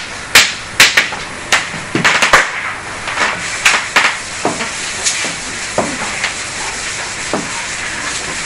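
Writing on a board during a pause in speech: irregular sharp taps and short scrapes, thickest in the first half and sparser later, over a steady hiss.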